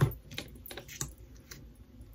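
Small plastic clicks and knocks from handling a mascara tube and pulling out its wand, with one sharper knock at the very start and a few faint clicks after.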